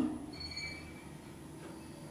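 Otis Gen2 elevator car standing at a landing: a faint, steady low hum, with a short high electronic beep about half a second in.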